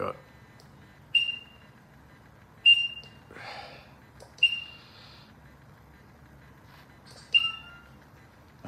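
Four short high beeps from a Veteran Lynx electric unicycle as its button is pressed to step through the settings menu, each a quick click and tone that fades fast, spaced unevenly over several seconds.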